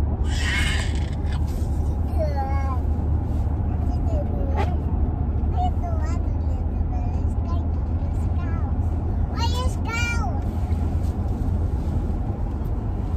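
Steady low rumble of a car's cabin on the move, with young children's high-pitched squeals and voices at about two seconds and again near ten seconds, and a brief rustle right at the start.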